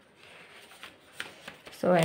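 Pages of a textbook being turned by hand: soft paper rustling with a few light crisp flicks. A woman's voice starts just before the end.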